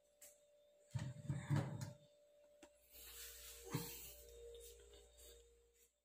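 Rustling, rubbing and a knock from a phone being handled and moved close to the microphone, over a faint steady hum.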